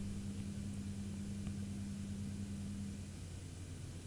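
Quiet room tone: a faint steady low hum under a light hiss, its upper tone dropping away about three seconds in.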